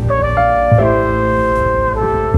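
Background music: brass instruments hold notes that change pitch every half second or so, over a steady bass line.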